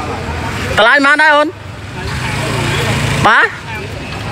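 Engine of a nearby road vehicle running, growing louder for over a second and then cutting off suddenly, with short bursts of talk around it.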